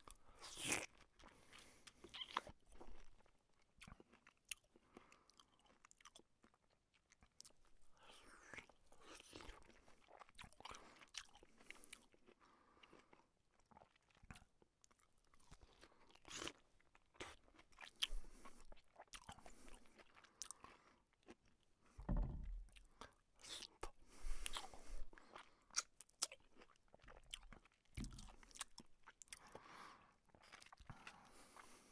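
Close-miked mouth sounds of a person eating by hand: irregular chewing and biting with small crunches and wet clicks. A few louder bites come about two-thirds of the way through and near the end.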